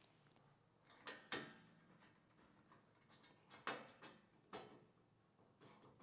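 A few faint clicks and taps of hand tools on the table's bracket as a nylock nut is fitted onto the bolt. An allen key holds the bolt and a nut driver turns the nut.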